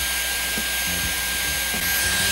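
Dyson Airwrap hair styler running steadily, its curling barrel wrapping a lock of short hair: an even rush of blown air with a thin, high, steady whine from its motor.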